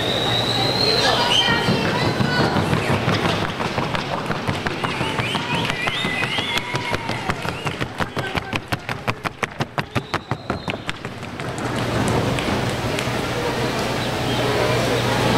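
A paso fino horse's hooves striking a hard board in a quick, even patter, about six beats a second. It starts about halfway in and lasts roughly four seconds over a hum of background voices.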